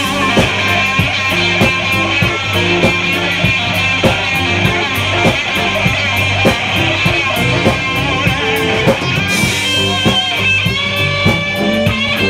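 Live band playing, with electric guitar over a drum kit keeping a steady beat.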